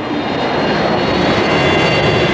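Jet airliner engines running: a steady rushing noise with several high, steady whining tones over it, swelling at the start.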